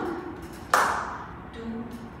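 A single sharp hand smack about a second in, with a short ringing decay in the room.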